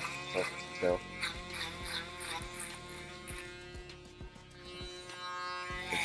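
Gold cordless hair clipper running with a steady hum, over background music with a steady beat.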